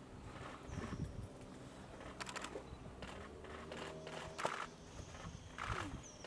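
Several short bursts of rapid camera shutter clicks, about four in all, from cameras firing in continuous-shooting mode, over faint outdoor ambience with a few thin high chirps.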